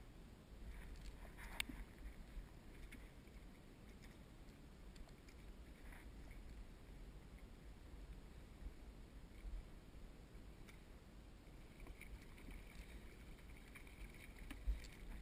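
Faint water lapping against a plastic kayak hull over a low wind rumble on the microphone, with a few light clicks, the clearest about a second and a half in.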